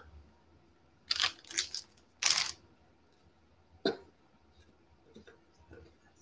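A clear plastic bag rustling as cotton-ball craft snow is pulled from it and pressed into a box: a few short bursts in the first half, then a single sharp click.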